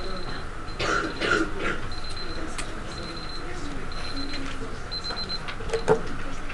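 Classroom murmur of students talking quietly to each other in pairs, with no single voice standing out. A short high-pitched beep repeats about once a second throughout, and there is a single sharp knock near the end.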